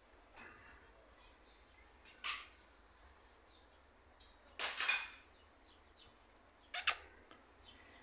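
Budgerigar giving a few short, scattered chirps, the loudest about five seconds in and just before seven seconds.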